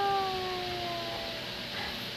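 A person's voice singing a long, high note that slides slowly down in pitch and fades out about one and a half seconds in.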